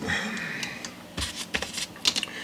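Small handling noises from a measuring tool being picked up and readied over the guitar: a short, soft rubbing scrape, then a few light clicks and taps in the second half.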